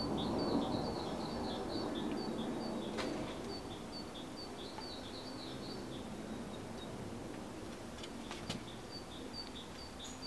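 Small birds chirping in quick repeated series in the background, pausing about two-thirds of the way through. Under them, a soft rustle of hands at work in the first few seconds and two sharp clicks, as the adhesive camera mount is handled and pressed onto the metal rack.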